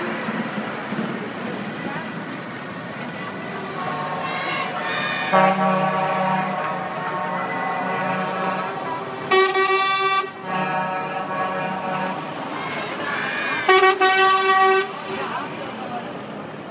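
Horns of passing lorries sounding several times over the steady run of their engines: a long, lower horn note from about five to nine seconds in, repeated a little later, and two louder, brighter air-horn blasts at about nine and fourteen seconds in.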